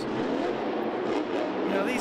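Monster truck's supercharged V8 engine revving hard, its pitch rising and falling as the driver works the throttle to keep the truck from tipping over backwards while it rides up on its rear wheels.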